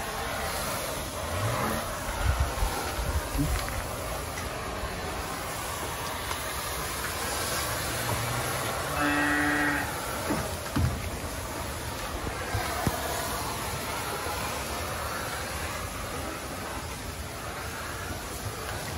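Thermal fogging machine running steadily with a hissing drone as it pours fog into a cattle shed. A cow moos once, briefly, about nine seconds in, and there are a few knocks about two to three seconds in.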